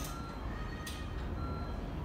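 Short electronic beeps at a few different pitches, with a couple of sharp clicks over a steady low rumble.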